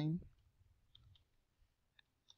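A few faint computer keyboard keystrokes: two short clicks about a second in and another near the end.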